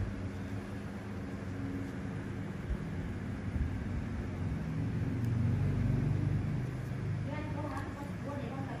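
Low steady hum with muffled voices in the background, swelling a little past the middle; a clearer voice comes in near the end.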